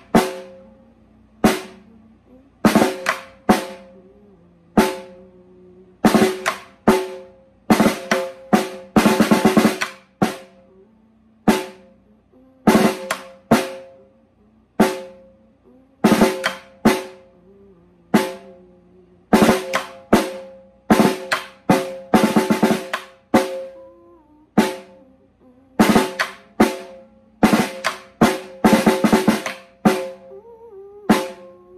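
Snare drum played alone with wooden sticks at slow practice speed: a repeating verse rhythm of single strokes mixed with short quick flurries, each hit ringing on briefly.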